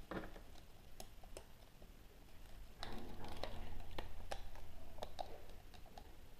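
Hard plastic toy horse figure and its clear plastic wings being handled: light, scattered plastic clicks and taps. A louder rustling handling noise comes in around three seconds in and fades a second or two later.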